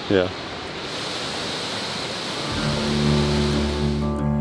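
Steady rushing of water from a short waterfall at a mill. Background music with held tones comes in about halfway through.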